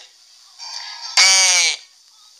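A man's voice holding a drawn-out, wavering vowel for about half a second, a spoken hesitation sound, just after a soft murmur.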